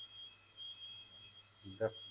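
High-speed dental handpiece with a diamond bur, giving a steady high-pitched whine that runs in short stretches with brief breaks as it cuts down an upper front tooth for a full crown.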